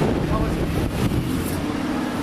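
Audi R8 sports car pulling away along a city street, its engine running under traffic noise, with voices nearby.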